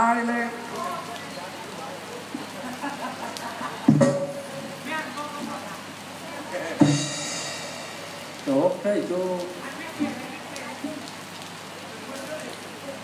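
Sparse percussion from a southern Thai Nora ensemble: two sharp strikes about four and seven seconds in, the second followed by about a second of high ringing. Brief amplified voice fragments come between them, over a steady hiss.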